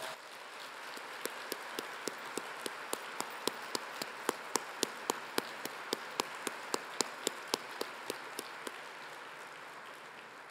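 Audience applauding, with one pair of hands close by clapping steadily at about three to four claps a second over the crowd. The applause fades away near the end.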